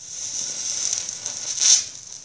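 A small heap of potassium permanganate mixture burning on paper with a high, steady hiss that swells to its loudest near the end and then falls to a weaker crackling fizz as the flare dies down.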